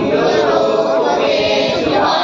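A group of young scouts singing a song together in unison, their voices steady and continuous.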